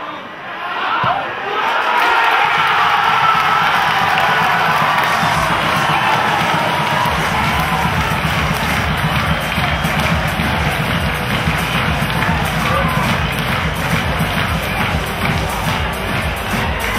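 Football crowd cheering and shouting, swelling about two seconds in, with music carrying a steady beat underneath.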